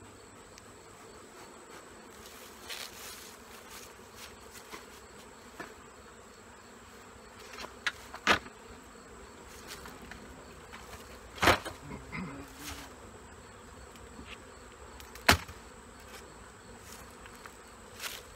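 Honeybees buzzing steadily around an opened hive, with several sharp knocks and clunks of hive covers being lifted off and handled. The three loudest knocks fall in the second half.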